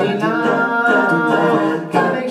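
Small mixed-voice a cappella group singing into microphones, holding a sustained chord in close harmony.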